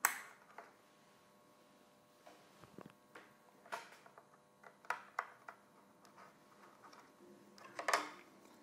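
Faint, irregular clicks and knocks of hard plastic being handled as an ethernet cable is plugged into the socket of an Ajax Hub alarm panel and its plastic casing and back cover are moved about.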